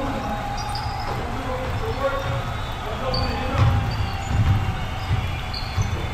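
Basketball being dribbled on a hardwood gym floor, a run of low bounces in the second half, with short high sneaker squeaks on the court.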